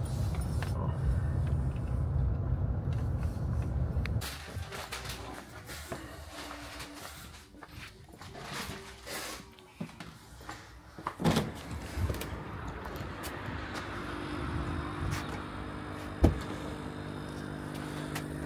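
A car's engine and road rumble heard from inside the cabin for about the first four seconds, then it cuts away to quieter ambient noise with a few scattered knocks and clicks and a faint steady hum near the end.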